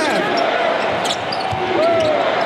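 Basketball game court sound: a ball bouncing on hardwood and a few short squeaks, over a steady arena din.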